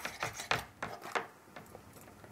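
Kitchen knife cutting into a whole fish on a chopping board: a few short cutting strokes in the first second or so.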